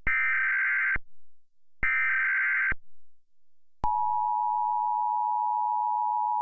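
Emergency Alert System-style warning signal: two data-header bursts of warbling digital tones, each about a second long, then a steady two-tone attention signal starting about four seconds in and holding.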